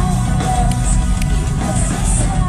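Symphonic metal band playing live, heard from within the audience: a dense, heavy low end with a wavering melody line above it and a couple of sharp hits.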